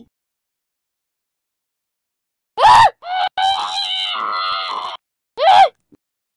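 A high-pitched human voice screaming: a short sharp cry, then a longer wavering scream lasting about two seconds, then another short cry near the end.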